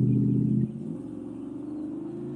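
Low engine rumble of a motor vehicle, loud at first and dropping sharply to a quieter level about half a second in.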